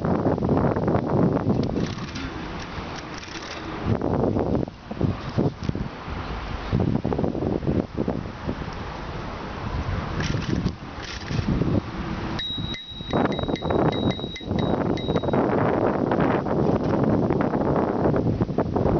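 Wind buffeting a moving camera's microphone in uneven gusts. About twelve seconds in, a thin high tone sounds on and off for about three seconds.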